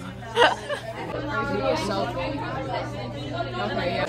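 Chatter: several people talking over one another, with a brief loud burst about half a second in.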